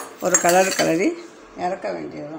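A steel spoon clinks and scrapes against a metal kadai as thick wheat halwa is stirred, with a sharp clink right at the start. A woman speaks a word or two in Tamil over it.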